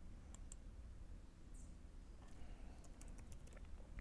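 Faint computer keyboard keystrokes: two separate clicks near the start, then a quick run of keys a little past the middle, as a ticker symbol is typed.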